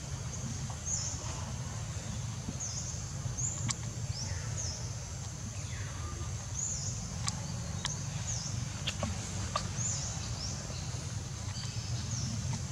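Forest ambience: a steady low rumble with short, high chirps that slide downward, repeating roughly every second from a small bird calling, and a few faint clicks.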